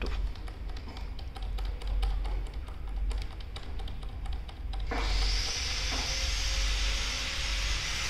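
Computer keyboard key, the F2 key, tapped rapidly and repeatedly to enter BIOS setup during boot, giving many short clicks. About five seconds in, a steady hiss starts abruptly.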